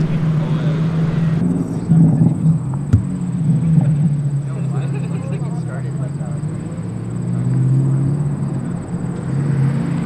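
Car engines running at low revs, a steady low drone whose pitch wavers, with a sharp click about three seconds in.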